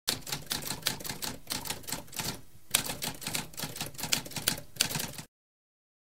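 Typewriter typing: a rapid, uneven run of key strikes with a brief pause about two and a half seconds in, stopping abruptly a little after five seconds.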